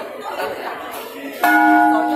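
A metal bell struck once about one and a half seconds in, ringing on with several clear steady tones over voices.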